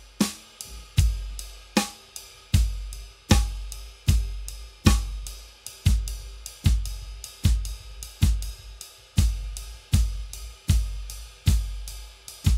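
A drum kit plays a sixteenth-note coordination pattern. The ride cymbal keeps a constant pulse while the bass drum, left-hand snare and foot hi-hat strike together in unison, giving a deep combined hit about every three-quarters of a second.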